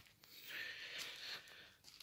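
Faint breath, a soft hiss of air through the nose or mouth lasting about a second, in a quiet room.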